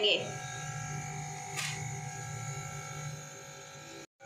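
A steady electric hum made of several even tones, with one faint tap about a second and a half in.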